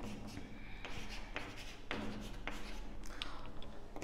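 Chalk writing on a chalkboard: quiet, short taps and scratches, one stroke about every half second, as a number is written.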